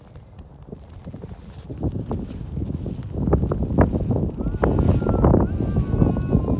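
Plastic sled sliding and scraping over crusted snow as it sets off downhill, a rough crunching that grows louder from about a second and a half in. A high, drawn-out tone joins near the end.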